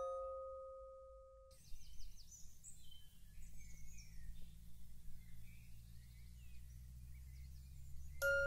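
A single glockenspiel note rings and dies away over the first second and a half. Then comes a faint, steady low drone with soft, high chirping scattered over it, like distant birdsong.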